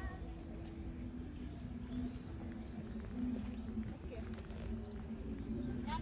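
Outdoor background: a low steady rumble with a constant hum, and faint voices of other people now and then.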